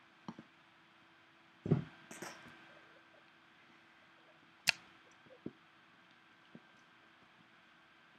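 Cats playing with a wand toy on a carpeted floor: a dull thump a little under two seconds in, a brief rustle just after, then a sharp click near the middle and a few small knocks, over a faint steady hum.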